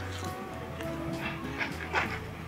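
Background music with a few short, sharp animal yelps.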